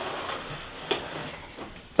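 A Sugden A48 amplifier being slid and turned round on a wooden tabletop: a soft scraping rub, with one click about a second in.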